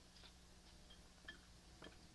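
Near silence: a steady low hum with a few faint, short clicks.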